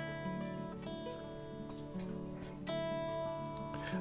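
Harley Benton Fusion-T electric guitar strings plucked and left to ring while the guitar is checked against a tuner. A new note is struck about a second in and again near three seconds.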